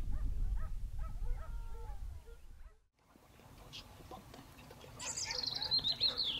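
Hunting hounds barking and yelping in the distance over a low rumble. After an abrupt cut about three seconds in, the sound is quieter, and near the end a bird gives a high, falling whistled call.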